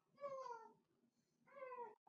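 Faint cat meows, twice: each a single call of about half a second that falls in pitch, one shortly after the start and one near the end.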